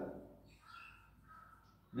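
A man's voice trails off in the first half-second, followed by two faint, short high-pitched sounds about half a second apart.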